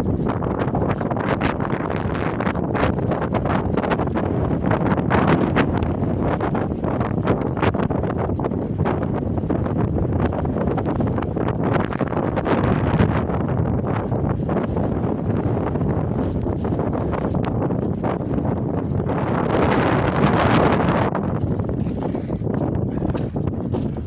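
Wind buffeting the microphone, a steady noise throughout, with crackling rustles of dry, rough grass being pushed through. The noise swells louder and brighter near the end.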